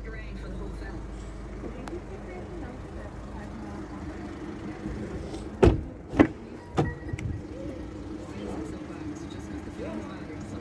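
Car doors of a 2022 Mercedes-Benz A-Class: three sharp clunks a little over halfway through, a door shutting and the latch and handle of another being worked as it opens, over a low steady background hum.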